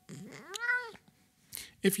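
Domestic cat meowing once, a single call that rises and then falls in pitch.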